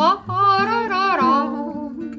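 A woman humming a wordless melody with vibrato, accompanied by an acoustic guitar.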